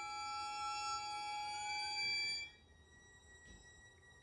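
String quartet holding high sustained notes, one of them sliding slowly upward in pitch, then breaking off together about two and a half seconds in. A single faint high tone lingers in the quiet that follows.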